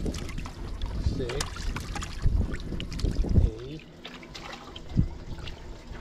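Live golden shiners flapping and splashing in water as they are picked by hand out of a tray and dropped into a bucket, making irregular wet slaps and clicks with a sharp knock near the end. Wind rumbles on the microphone, strongest in the first half.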